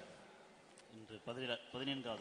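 A man's voice, faint and brief, starting about a second in, with a thin steady high-pitched whine alongside it.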